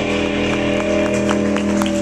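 A live rock band holding a steady final chord, with several notes sustained together, cutting off at the end. Scattered claps from the audience begin under it.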